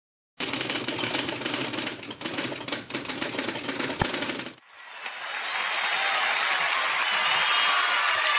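Title sound effects: a dense, rapid clatter of clicks for about four seconds, ending in one sharp click, then a hiss that rises and swells toward the start of the music.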